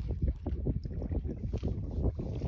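Wind rumbling on the microphone over water moving against a small fishing boat, with light irregular splashing as a fish comes to the landing net.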